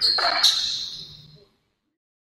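Basketball players' group shout as they break a huddle, followed by a brief high ringing that fades away. The sound is gone by about a second and a half in.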